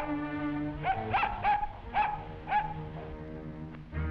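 Cartoon orchestral score with held notes, over which a cartoon puppy yips about five times in quick succession, short rising-and-falling calls.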